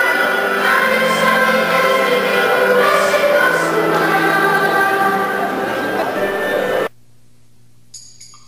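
Children's choir singing with musical accompaniment, with long held notes. The singing cuts off suddenly about seven seconds in, leaving only a faint low hum.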